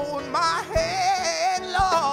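A man singing a gospel solo, holding long notes with a wide, wavering vibrato over instrumental accompaniment.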